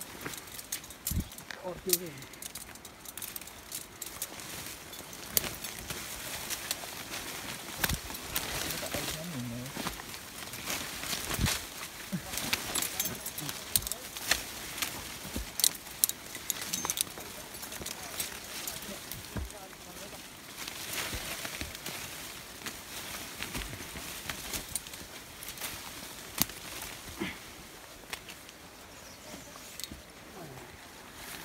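People pushing on foot through dense undergrowth: leaves and branches rustling and brushing against clothing, with frequent sharp snaps and crackles of twigs.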